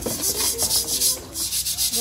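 Large metal cooking pot being scrubbed by hand with sand: quick, even rasping strokes, several a second, with a brief pause about a second and a half in.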